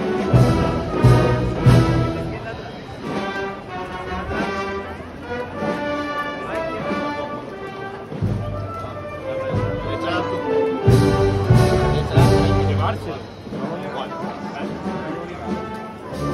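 Wind band of brass, woodwinds and drums playing a processional march. Heavy drum beats come in the first two seconds and again about eleven seconds in.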